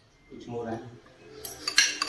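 Metal spoon and fork clinking and scraping against a plate, with a quick run of sharp clinks near the end.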